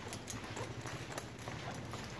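Faint footsteps and a few light, irregular knocks and clicks on a concrete floor, over low background noise.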